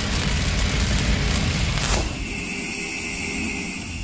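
Cinematic logo-intro sound effect: a dense noisy rush left by a boom slowly fades, a sharp hit comes about halfway through, then a steady high ringing tone carries on.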